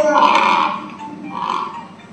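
Recorded animal call played through a phone's speaker: two rough, noisy calls, the first lasting most of a second and a shorter one about a second and a half in.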